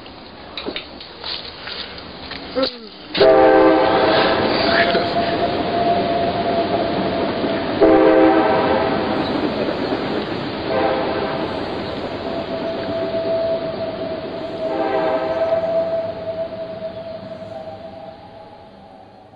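Train horn sounding four separate blasts, the first and last longer, over the steady noise of the passing train; a steady tone carries on between the blasts. A few sharp clicks come before the first blast, about three seconds in.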